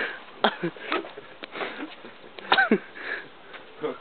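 Short breathy sniffs and breaths from a person, with one brief voiced sound that falls in pitch about two and a half seconds in.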